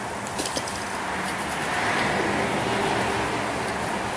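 Steady outdoor background rushing noise that swells a little towards the middle and eases again, with a few light clicks about half a second in.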